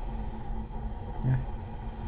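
Steady low rumble of workshop background noise with a faint constant hum, and one short spoken "É" about a second in.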